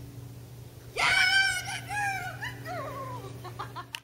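A woman's high-pitched excited squeal of praise starting suddenly about a second in, followed by several shorter calls that fall in pitch, over a faint steady low hum.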